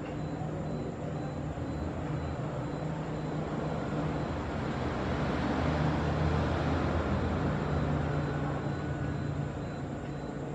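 Background rumble of passing traffic, swelling to its loudest about six seconds in and then easing off.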